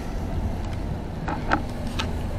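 Motorised folding security gate opening: a steady low hum with a few faint clicks from the moving panels.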